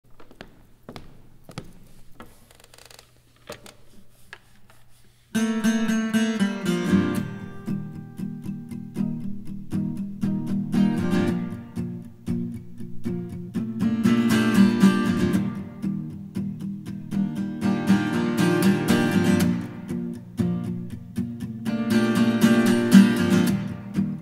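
Solo acoustic guitar strummed, ringing chords in a slow pattern that swells every few seconds. It starts suddenly about five seconds in, after a quiet opening with only faint clicks and a low hum.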